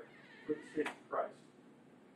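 A man's voice speaking a few short, clipped words with pauses between them, trailing off into quiet room tone for the second half.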